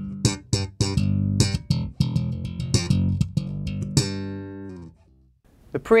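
Human Base Roxy B5 five-string electric bass played slap style with its Glockenklang preamp's treble boosted: low notes with sharp, bright thumps and pops. The playing stops near the end.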